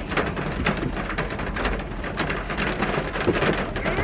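Rain pattering on a car's roof and windows, heard from inside the cabin as dense, irregular ticks over a steady low rumble.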